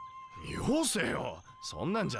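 Speech only: anime dialogue, one man's voice asking a short question and another man answering.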